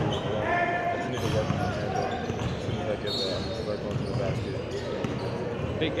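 Sound of a basketball game in play in a gym: voices on and around the court, a basketball bouncing, and short high squeaks of sneakers on the hardwood about a second in.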